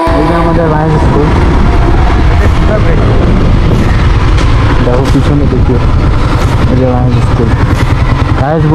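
Motorcycle ride heard from the bike itself: a steady engine and road rumble with heavy wind noise on the on-board microphone.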